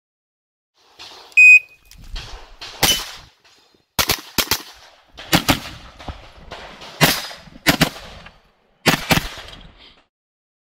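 A shot timer's electronic start beep about a second and a half in, then a 9mm blowback pistol-calibre carbine firing a string of shots, mostly in quick pairs, through to the end.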